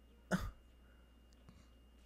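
A man's single short cough, about a third of a second in, against near silence.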